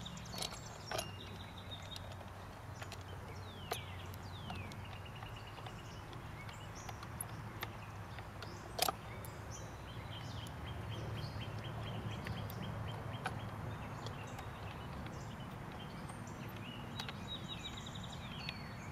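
Birds calling outdoors, with repeated fast trills and short falling chirps, over a steady low rumble. A few sharp clicks, the loudest about nine seconds in, come from nuts and small hardware being fitted by hand onto the cannon carriage's through-bolts.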